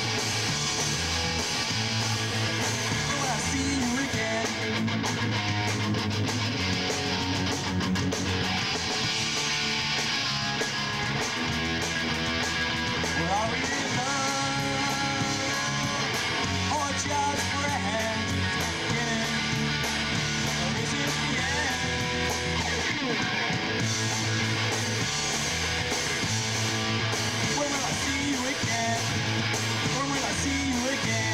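Live rock band playing a song: strummed electric guitar over a bass line that steps through a repeating riff, with drums.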